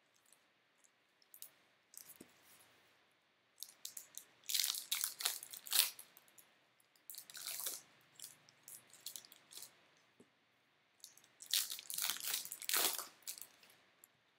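Trading cards and a foil card-pack wrapper being handled, crinkling and rustling in three bursts with quiet between.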